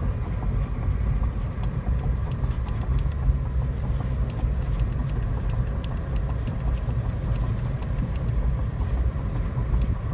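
Steady low rumble of a car's engine and tyre noise heard from inside the cabin while driving, with a run of faint, quick, irregular clicks starting about a second and a half in.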